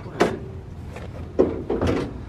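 Steel door of a 1964 Chevrolet Bel Air sedan being worked open by hand: a metallic clunk with a short ring just after the start, then two more clunks near the end.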